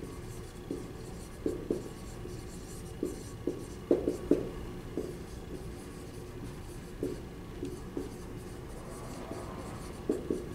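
Dry-erase marker writing on a whiteboard: a run of short, irregular pen strokes, with a cluster of louder strokes about four seconds in.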